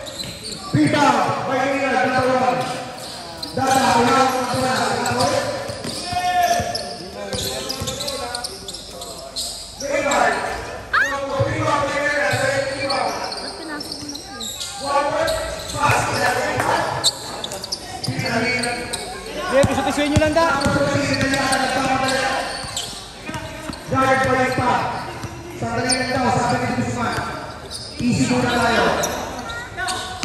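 Basketball game: a ball bouncing on a concrete court, with players' and spectators' voices calling out almost without a break.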